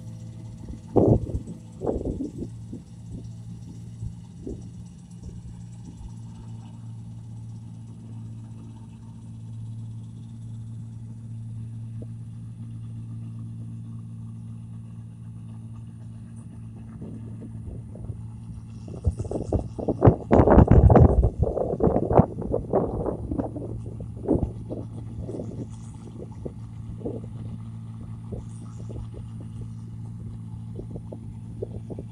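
Rice combine harvester's engine running steadily at a distance. Brief loud rough rumbles break in about a second and two seconds in, and again in a longer spell around twenty seconds in.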